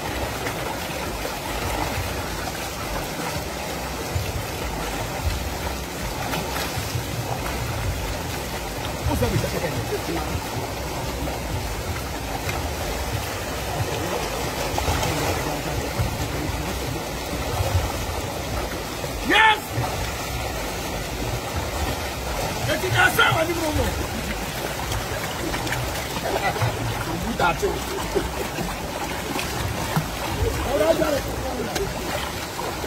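River water running over rocks and splashing around people wading in it, with indistinct voices in the background and a brief loud call about twenty seconds in.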